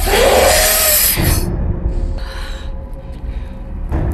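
Film soundtrack: a mountain banshee (ikran) giving a loud, harsh screeching hiss that bends up and then down in pitch and ends about a second and a half in, followed by shorter, quieter hisses over a steady low rumble.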